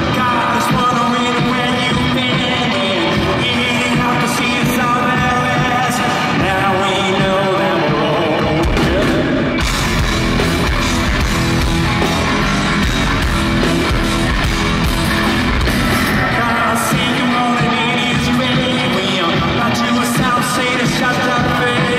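Live rock band playing at full volume: lead vocals over electric guitar, bass and drums. The singing drops out about eight seconds in while the drums and bass carry on with a heavier low end, and the vocals come back near the end.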